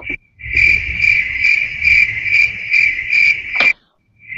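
Cricket chirping in a steady pulse of about two and a half chirps a second. It stops abruptly with a click shortly before the end.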